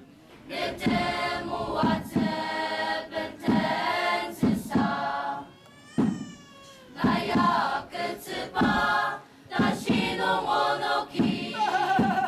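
A choir singing as background music, voices in phrases with short breaks between them.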